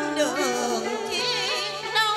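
Woman singing a Vietnamese song into a microphone over a karaoke backing track, holding wavering notes with a wide vibrato.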